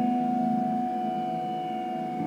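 Harp guitar played through effects in free improvisation, sounding sustained ringing tones: a low note fades away over the first second and a half beneath a steady higher held tone.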